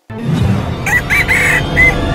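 A bird's call of four notes about a second in, laid over music with a heavy low end.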